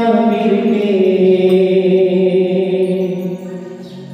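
Devotional bhajan music: a male voice holds a long, slightly wavering sung note over sustained electronic keyboard. The note fades out near the end.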